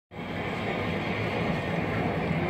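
Steamroadster street-theatre vehicle running, a steady mechanical noise with a hiss above it.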